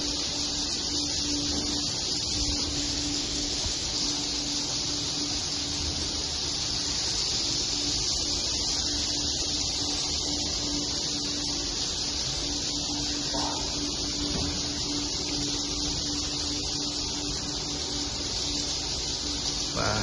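Dense, steady high twittering of a large flock of swiftlets flying inside a swiftlet nesting house, with a low steady hum beneath.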